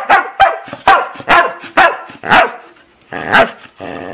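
Border collie barking, about seven short sharp barks at roughly two a second, then a low, drawn-out growl starting near the end.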